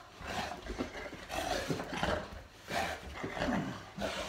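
Boerboel play-growling in a string of short bursts while wrestling with a person.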